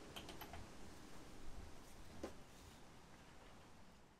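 Faint clicks from a socket wrench tightening a scooter's rear axle nut: a few quick clicks at the start and one more near the middle, over quiet room noise.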